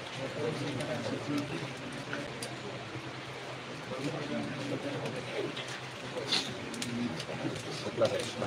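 Crowd of spectators in a pool hall talking among themselves, a steady murmur of many overlapping voices, with a sharp click about six seconds in.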